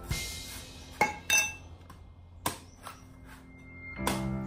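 Machete chopping into the husk of a young green coconut: a few sharp chops, two close together just after a second in and another about midway, with lighter taps between.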